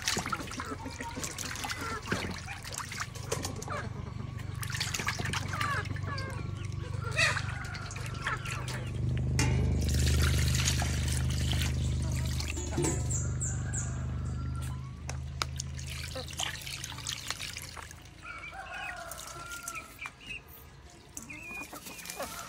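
Water trickling and splashing with scattered clicks, plus short bird chirps. A low droning hum swells in from about eight seconds in, is the loudest sound for several seconds, and fades out a few seconds before the end.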